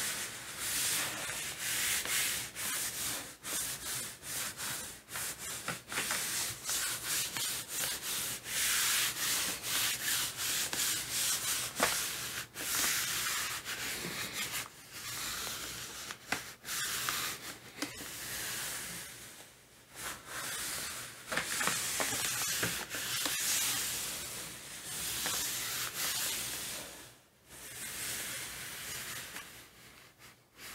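Hands rubbing and smoothing a large sheet of printmaking paper laid over an inked gel printing plate, burnishing it so the paper picks up the paint. The strokes come one after another in a long run of hissy rubbing, broken by a few short pauses.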